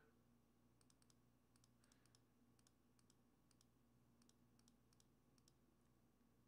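Near silence with about a dozen faint, irregular clicks of a computer mouse.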